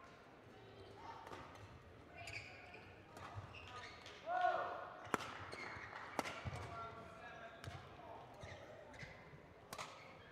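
Badminton rally: sharp racket hits on the shuttlecock, about ten of them at roughly one a second, in a large hall. Short pitched squeals sound between the hits, the loudest about four seconds in.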